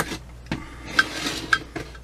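Light metallic clicks and taps from a Holley 1904 one-barrel carburetor's body and float being handled, about four small clicks spread over two seconds, with a brief scraping rustle about a second in.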